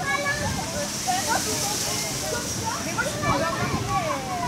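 Indistinct children's voices and calls in the background, over a steady high hiss.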